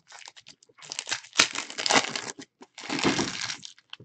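Foil wrapper of a soccer trading-card pack being torn open and crinkled by hand, in two runs of crinkling: one from about a second in, the other near the end.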